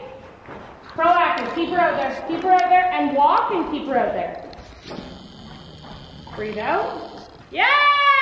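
Indistinct talking in a large indoor arena, with a long, loud call falling in pitch near the end.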